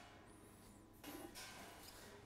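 Near silence: room tone, with a faint brief sound about a second in.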